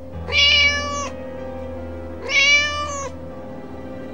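A kitten meowing twice, each meow just under a second long, about a second apart, over soft background music with held notes.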